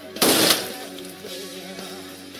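A single loud gunshot about a quarter second in, over film score music that plays on steadily after it.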